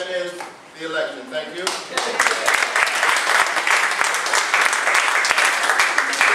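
A roomful of people applauding, starting about two seconds in after a few spoken words: many hands clapping at once, steady and dense.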